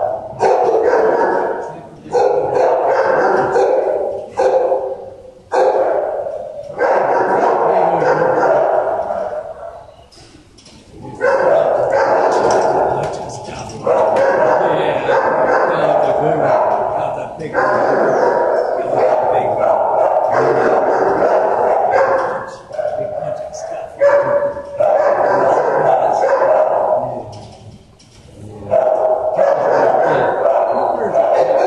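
Many shelter dogs barking in the kennels in long, loud, overlapping stretches, broken by short lulls every few seconds.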